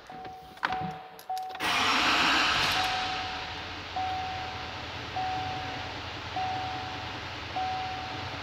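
A door-open warning chime repeats about once a second. About a second and a half in, a 6.6-litre L5P Duramax V8 diesel cranks and starts at once, then settles into a steady idle with the chime still sounding over it.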